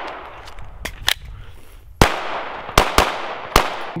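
Pistol shots fired as single rounds: two quieter cracks about a second in, then four loud shots, irregularly spaced, from two seconds on, each trailing off briefly.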